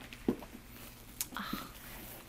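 A packed quilted caviar-leather Chanel Jumbo flap bag being closed by hand: two small clicks about a second apart amid soft handling rustle.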